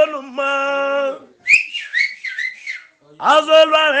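A man singing a long held note, then a short run of high whistling that slides up and down about a second and a half in, with the singing starting again near the end.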